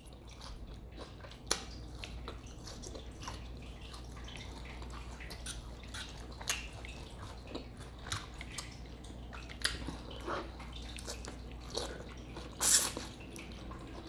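Close-miked chewing of salad and steak: scattered wet mouth clicks and smacks, with one louder burst near the end, over a low steady hum.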